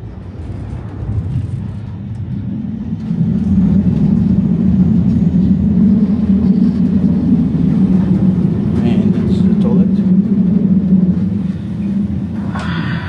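Deutsche Bahn train running at speed, heard from inside the carriage as a steady low rumble that gets louder about three seconds in.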